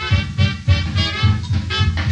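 Instrumental 1930s–40s swing band music with a steady beat.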